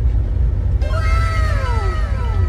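A single long, high-pitched, meow-like cry that falls steadily in pitch, starting about a second in, over the steady low rumble of a car cabin on the move.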